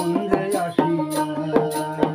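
Bangladeshi folk ensemble: a dotara's plucked melody over hand-drum strokes and a rattle or hand-cymbal keeping a steady beat of about two strokes a second.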